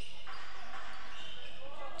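Steady background noise of a basketball game being played in an indoor gym hall.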